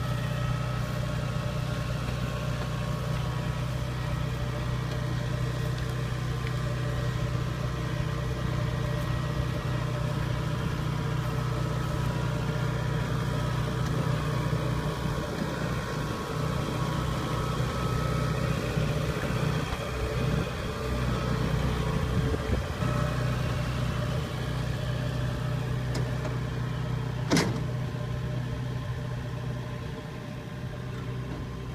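Kubota DC70 combine harvester's diesel engine running steadily as the tracked machine drives along, with one sharp knock near the end.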